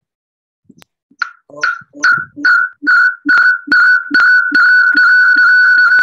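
Video-call audio cuts out for about a second, then a loud, high electronic beep repeats about twice a second, the beeps lengthening until they merge into a steady whistle about four seconds in. It is a really weird call-audio glitch, which the speaker blames on a participant who has not muted.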